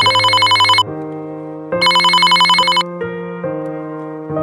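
A phone ringing twice, each ring a rapid trill lasting about a second, over background keyboard music.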